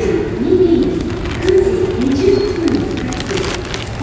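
Airport public-address announcement: a woman's voice over the terminal loudspeakers, echoing in the large hall, giving a final check-in call for a departing flight.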